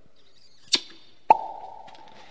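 Two short smacking pops about half a second apart, the second trailing a brief fading ring: two kisses of a ceremonial embrace, played as a radio-play sound effect.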